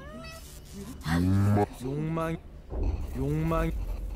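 A person's voice in a few short, drawn-out phrases with slightly bending pitch.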